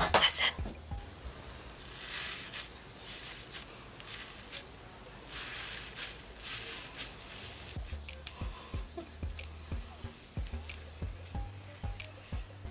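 Fingertips rubbing and squishing the foam of a bubbling face mask close to the microphone: quiet, soft hissy rubbing in two stretches, with faint light ticks later on.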